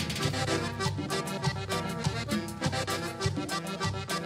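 A norteño band playing a cumbia, with a button accordion carrying the melody over bass and drums in a steady, even beat.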